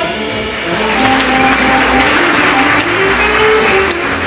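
Jazz big band playing. The full brass ensemble drops back, leaving a single melodic line over the rhythm section and cymbals.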